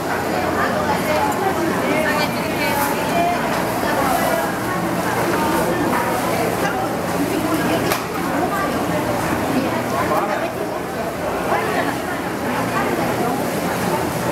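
Indistinct chatter of vendors and shoppers in a busy fish market, voices talking continuously, with a few brief clicks or knocks.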